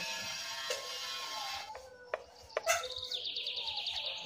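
A few light clicks of a metal spoon against a steel bowl around the middle, then a small bird chirping in a fast, even trill from about three seconds in.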